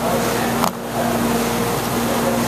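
Steady mechanical hum and hiss of background machinery, with one short sharp click about two-thirds of a second in as the seal on a soy sauce bottle is cut open.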